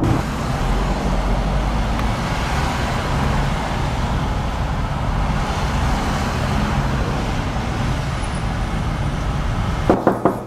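Steady highway traffic noise: a continuous rumble and hiss of cars and tyres on a busy multi-lane road, with no single vehicle standing out.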